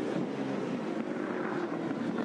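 A Supercar's 5.0-litre V8 race engine, a Tickford Ford Falcon, running on track with a fairly steady engine note.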